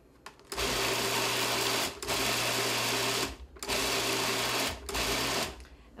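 Food processor pulsed four times, its motor whirring in bursts of about a second each with short pauses between, the last burst shorter, as it chops basil, pine nuts, Parmesan and garlic into pesto.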